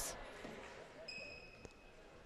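Quiet gym with a faint short whistle about a second in, the referee's signal to serve, then a single bounce of a volleyball on the hardwood court floor.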